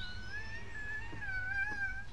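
A long, high, wavering tone held for about two seconds, played as a sound effect on the ride's recorded soundtrack, over a steady low rumble.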